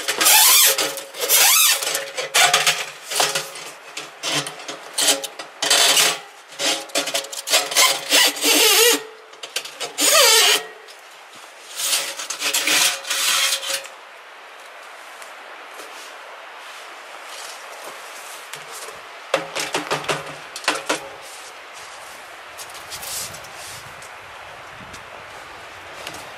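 A chimney brush on a flexible rod scraping back and forth inside a length of black steel stovepipe, brushing out dry ash and soot. A quick run of irregular scraping strokes thins out about halfway through to a quieter hiss, with a few more strokes a little later.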